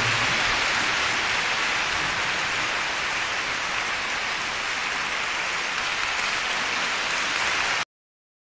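A concert audience applauding steadily. The applause cuts off suddenly near the end.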